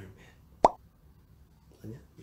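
One short, sharp pop, an edited-in sound effect, about two-thirds of a second in, with brief bits of a man's voice before and after it.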